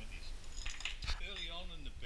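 A few light clinks and rattles of small hard objects being handled on a workbench, the sharpest about a second in, followed by a brief drawn-out sound from a man's voice.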